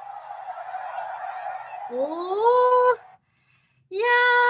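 A woman's voice gives a loud, drawn-out exclamation that rises in pitch about two seconds in and holds briefly. It comes over a steady hazy background that fits stadium crowd noise from the concert video.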